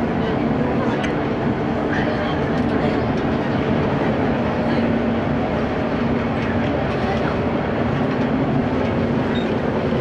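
Cabin running noise of a JR West Series 115 electric train: a steady rumble of wheels on rail with a level hum, unchanged throughout.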